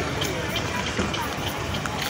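Indistinct voices of people hurrying along a railway platform with quick footsteps, over a steady low rumble.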